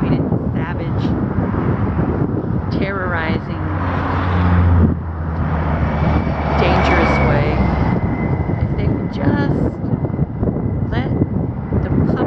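Wind buffeting the microphone over passing highway traffic. A vehicle's engine hum builds and cuts off about five seconds in, followed by another swell of passing noise.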